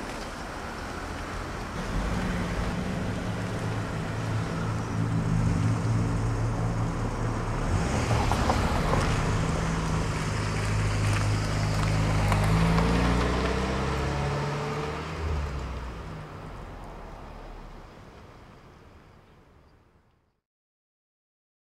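A car engine running as the car drives, with road noise; its pitch shifts a few times, and the sound fades out over the last several seconds.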